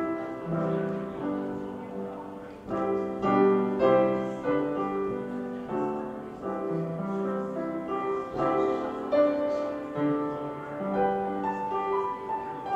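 Grand piano playing a slow, gentle piece: chords and melody notes struck every half second or so and left to ring.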